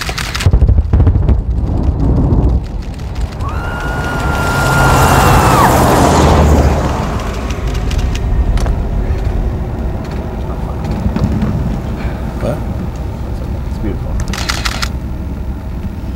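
Film-set pyrotechnic explosion: a sudden loud blast about half a second in with a deep rumble, swelling again a few seconds later, then the noise of the fire burning. A steady high tone sounds for about two seconds during the second swell.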